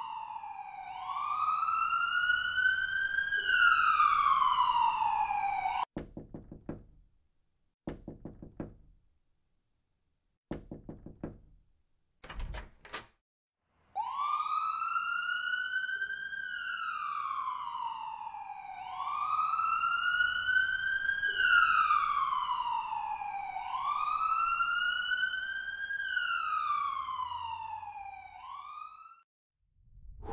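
Emergency-vehicle wail siren, its pitch rising and falling in slow cycles about every three seconds. It breaks off for several seconds, during which a few sharp knocks sound, then wails again and cuts off near the end.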